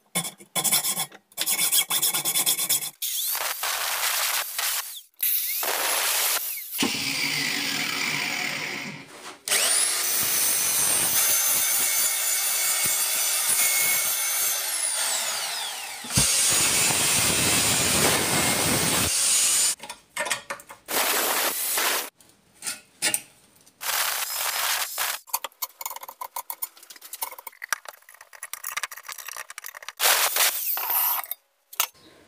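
Hacksaw strokes cutting a steel tube clamped in a vise, then a small angle grinder with a cut-off disc cutting the thin sheet steel of a two-stroke expansion chamber: a long continuous grind, the motor winding down about halfway through, followed by a run of short, broken cutting bursts.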